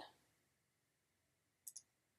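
Near silence, then two faint, quick computer mouse clicks close together near the end, a double click.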